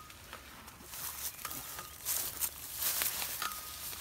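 Tomato plants' leaves rustling and brushing as twine is pulled through them, with footsteps on straw mulch.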